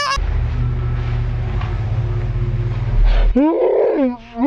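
Deep, low growling roar of a Halloween scare effect, running steadily for about three seconds. Near the end it gives way to a woman's short startled cry.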